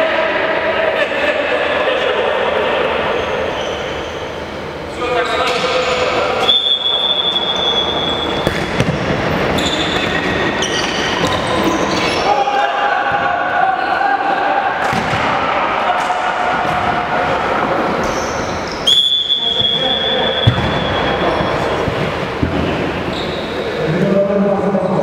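Indoor futsal play in an echoing sports hall: the ball being kicked and thudding on the wooden floor, players shouting, and two short blasts of a referee's whistle, one about six and a half seconds in and one near nineteen seconds.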